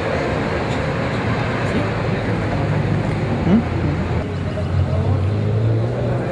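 Street noise at a crash scene: a vehicle engine running steadily, with people talking in the background.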